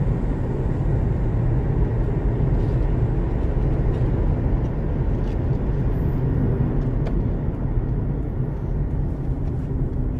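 Steady low rumble of a car driving on an asphalt road, heard from inside the cabin: engine and tyre noise at a constant cruising speed.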